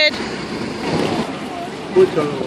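Steady rushing background noise with faint voices underneath.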